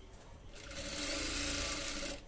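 Industrial sewing machine running a short burst of stitching through fabric, starting about half a second in and stopping at the end, with a steady hum.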